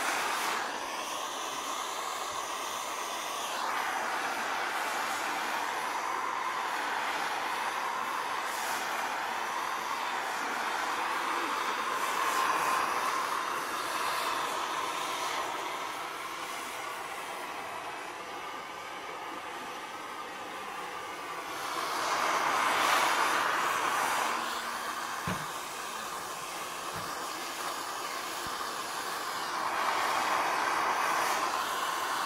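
Gas torch burning with a steady hiss, heating a steel door-bottom panel for lead loading. The hiss swells louder for a few seconds past the middle, and a couple of faint short knocks follow.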